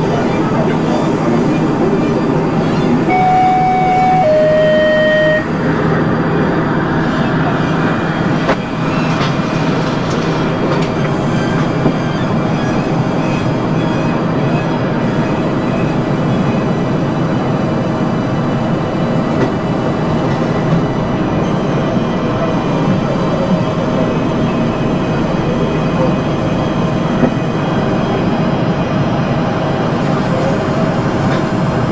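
Experimental industrial noise and drone music: a dense, steady wash of noise, with a short two-note falling electronic tone about three seconds in.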